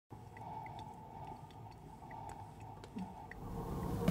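Faint room tone: a low steady hum with a few small, scattered ticks.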